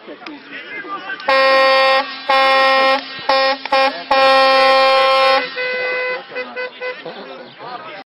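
A horn sounds in a series of loud, steady blasts: two of under a second each, two short toots, then a longer blast of over a second. A few fainter short toots follow, with voices and laughter around them.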